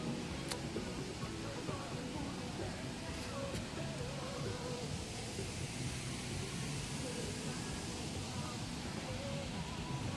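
Steady, even rush of a waterfall heard from a distance.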